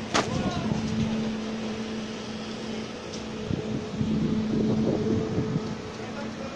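Construction machinery running with a steady two-pitched hum, and a single sharp knock just after the start.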